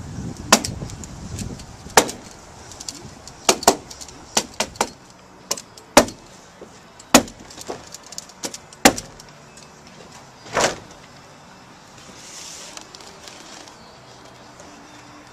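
Irregular series of sharp clicks and knocks, about a dozen, from hand-tool work fastening and fitting Trex RainEscape plastic drainage membrane over deck joists. One slightly longer scraping knock comes near the end.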